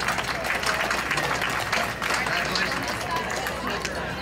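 Audience applauding, with voices mixed in.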